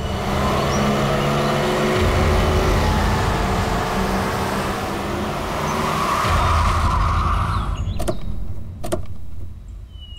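An SUV drives in over a dirt yard, its engine running, and brakes to a stop about eight seconds in with a brief hiss from the tyres on the dirt. A couple of sharp clicks follow as its doors open.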